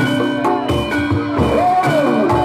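Javanese barongan accompaniment music: a drum beating about twice a second under held melodic notes, with one melody line rising and then sliding down in pitch near the end.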